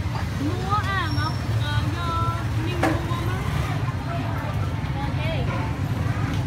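Street ambience: voices talking over a steady low rumble of traffic, with one sharp click about halfway through.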